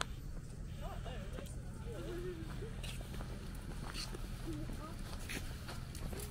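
Indistinct voices of people walking past, with a few scattered footstep clicks over a low steady rumble.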